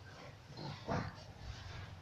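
A quiet pause in a man's speech, with faint background hiss and a short, faint breath about a second in.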